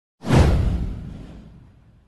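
A whoosh sound effect with a deep boom under it, starting sharply about a quarter of a second in, its hiss sliding down in pitch as it fades out over about a second and a half.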